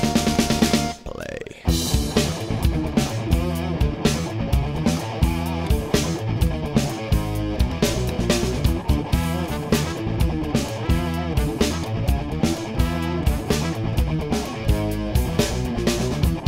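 Instrumental break in a swing-rock song. A held chord is followed by a falling sweep and a short drop about a second in. Then the full band comes back in with guitar, bass and drums on a steady beat.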